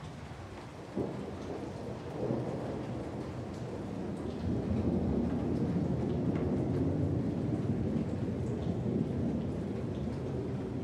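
Thunderstorm: steady rain with a sharp crack of thunder about a second in, then a low rolling rumble that builds and stays loud through the second half.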